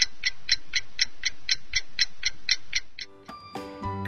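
Ticking clock sound effect of a countdown timer, about four even ticks a second, stopping about three seconds in. Faint musical notes begin near the end.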